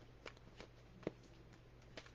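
Faint handling and shuffling of a deck of cards: a few soft clicks and flicks, the sharpest about a second in, over a low steady hum.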